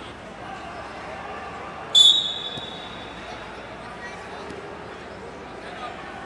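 Referee's whistle: one short, sharp blast about two seconds in, signalling the restart of the wrestling bout, over the steady murmur of a crowd in a large gym.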